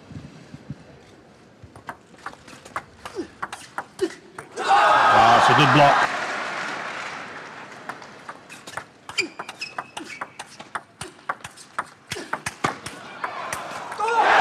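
Table tennis rally: the celluloid ball clicking quickly off bats and table. About five seconds in there is a short burst of crowd shouting and cheering at the end of the point, which fades. A second rally of quick ball hits follows in the second half.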